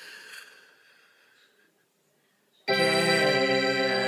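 Electronic keyboard: after a faint fading sound and a moment of near silence, a held organ-like chord starts abruptly nearly three seconds in and sustains without decaying.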